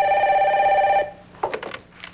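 Telephone ringing: one loud ring that cuts off abruptly about a second in.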